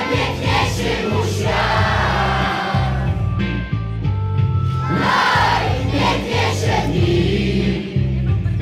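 Loud music with a steady bass beat, with a crowd of children and adults singing along in a mass of voices that swells twice.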